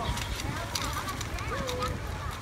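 Two dogs eating dry kibble from a metal bowl: irregular crunching and clicks of food against the bowl.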